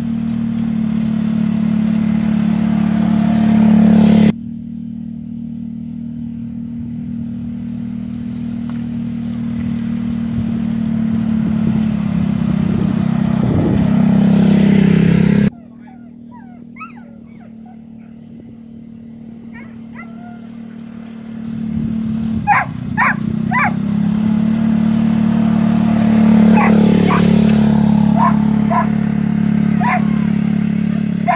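Side-by-side utility vehicle engine running steadily, growing louder, then cutting off suddenly twice. In the second half a dog barks repeatedly in short sharp bursts, loudest about two-thirds of the way through.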